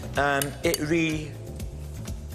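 A spoon stirring dried fruit in a glass mixing bowl, clinking and scraping against the glass, over background music.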